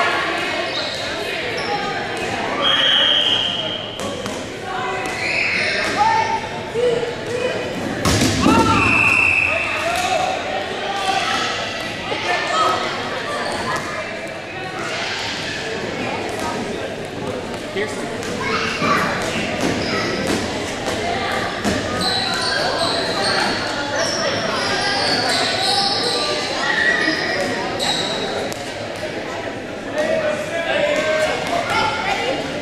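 Busy gym din: several players' voices calling and shouting over one another, with balls thudding on the hardwood floor, all echoing in a large hall.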